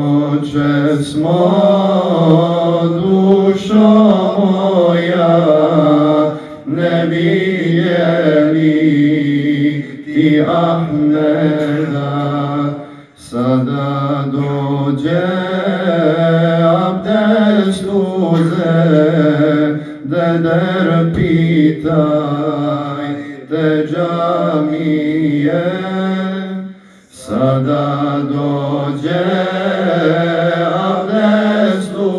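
A man chanting a solo religious recitation into a microphone, with no instruments. It runs in long melodic phrases with drawn-out, ornamented notes, pausing for breath about 13 seconds in and again near the end.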